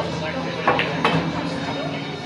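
A pool shot: the cue tip clicks against the cue ball, and about a third of a second later the cue ball clacks into an object ball close by.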